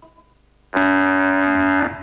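A single held brass chord, a game-show music sting, comes in suddenly about three quarters of a second in. It holds steady for about a second, then fades.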